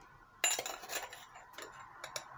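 A metal spoon clinking against kitchenware: one sharp ringing clink about half a second in, then a few faint light taps.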